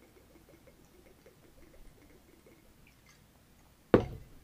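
Liquor trickling faintly from a bottle into a metal jigger, then a single sharp knock near the end as the glass bottle is set down on the counter.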